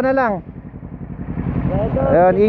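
A motorcycle engine idling as a low, steady rumble. A voice trails off about half a second in and starts again near the end.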